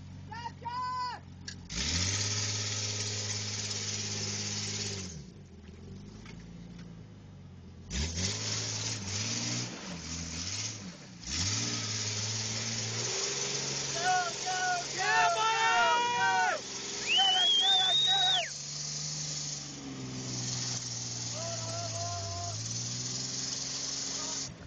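Jeep Cherokee XJ engine revving in repeated long surges as the stuck 4x4 spins its tyres through deep mud, with the rush of churning mud during each surge. Several voices shout and whoop over it.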